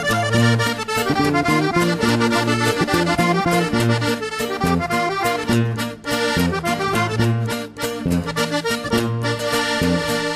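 Norteño band playing an instrumental passage led by button accordion, over a steady alternating bass line.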